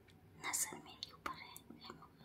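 A person whispering softly in short breathy bursts, with a few small sharp clicks between them.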